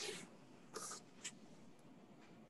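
Faint rustling over an open video-call microphone: a soft hiss fading out at the start, a second short hiss under a second in, and a small click just after it.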